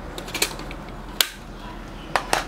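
Metal pencil tins being handled: a few light clicks near the start and one sharper click a little over a second in.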